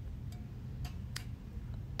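A few light clicks of items knocking against a chrome wire shelf as pieces are handled, the sharpest about a second in, over a steady low hum of store room tone.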